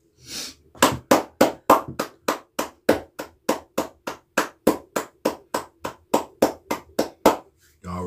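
A man clapping his hands in a steady rhythm, about three and a half claps a second, for some six seconds, starting about a second in.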